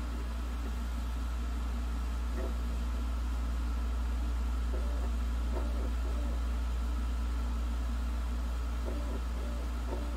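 Steady low hum from a portable Blu-ray player as it loads a disc, with a few faint short clicks and whirs from the disc drive.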